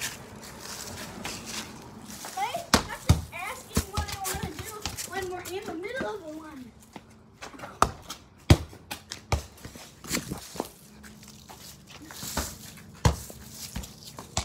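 Faint children's voices talking in the first half, with about ten scattered sharp knocks and taps throughout from children playing with balls on a concrete driveway.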